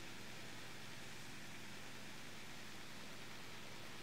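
Steady faint hiss of room tone, with no distinct sound event.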